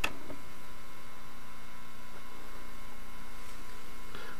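A steady electrical hum with several faint, unchanging tones, with no other events.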